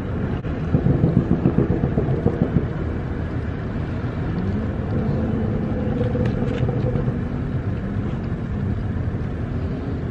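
Steady low rumble of street traffic, with a car engine hum that rises a little about halfway through and holds for a few seconds.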